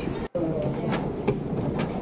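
Subway station ambience: a steady rumble with faint, indistinct voices and a few light clicks, cut off for an instant near the start by an edit.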